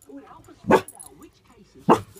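Collie-cross dog barking twice, two sharp single barks about a second apart, at a deer outside the window.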